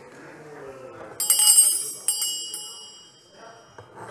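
A bright metallic ring, like a small bell, struck twice about a second apart, each ring dying away over about a second, over the faint murmur of a large hall.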